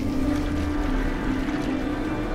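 Steady rush of falling water from a waterfall, laid over background music that holds sustained low tones.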